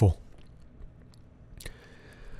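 A man's narrating voice ending a word, then a pause of faint room tone with a small mouth click and a soft breath near the end.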